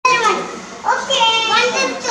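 Young children's voices: two high-pitched, wordless calls, the first falling in pitch and the second starting just before a second in.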